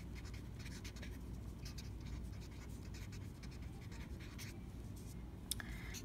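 Felt-tip marker writing on paper: a run of short, faint scratching strokes as words are written out.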